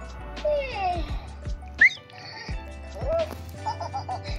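A 2023 Furby's electronic voice making gliding chirps and coos as it powers on for the first time: a long falling coo early, then a sharp rising chirp near the middle, the loudest sound, and a short rise-and-fall near the end. Background music with a steady beat plays under it.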